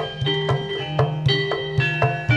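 Javanese gamelan playing tayub dance music: struck metallophone notes ringing in a steady pulse of about four strokes a second, over low sustained tones.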